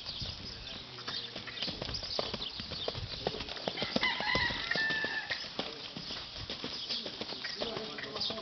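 Ridden horse's hooves striking a sand arena: an uneven run of soft footfalls as the horse is worked around the ring. A long, high-pitched call sounds in the background about halfway through.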